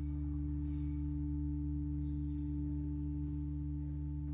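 Pipe organ holding one long, steady low chord, ringing in a large stone church.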